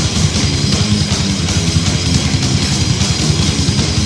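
Loud extreme metal track playing: heavily distorted guitars over fast drumming.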